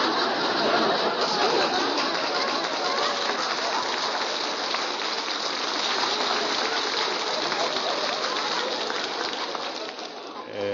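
Studio audience laughing and applauding in one long, steady round that eases off near the end.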